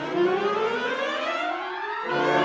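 Wind band with several parts sliding upward together in one long rising glissando, the pitch climbing steadily throughout.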